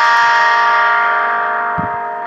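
A held musical chord ringing steadily at one pitch and slowly fading.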